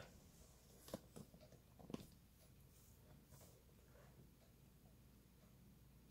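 Near silence: faint room tone with a low steady hum, and two faint clicks about one and two seconds in.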